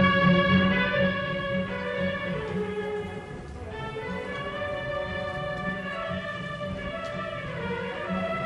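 Orchestral music with sustained tones, turning quieter about three seconds in.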